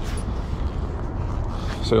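Steady low rumble of a vehicle engine running nearby, with a man's voice starting near the end.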